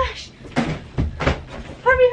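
A small child's voice: a brief high vocal sound at the start and a longer held one near the end. In between come several short rustles and soft knocks of clothes and bedding as the toddler moves about and crawls on the bed.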